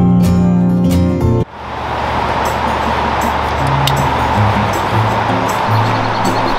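Strummed acoustic guitar music that cuts off abruptly about a second and a half in, giving way to a steady rush of flowing river water with faint low notes underneath.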